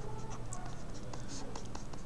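Stylus strokes on a drawing tablet as words are hand-written: a scatter of short, faint scratches and taps over a low steady hum.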